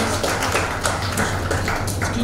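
Irregular sharp taps and clicks, several a second, over a steady low hum.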